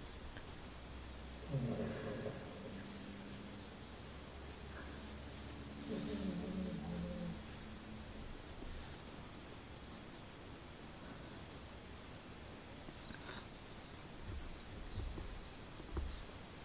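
Crickets chirping: a quiet, steady, high, fast-pulsing trill. Two faint low voice murmurs come about two and six seconds in.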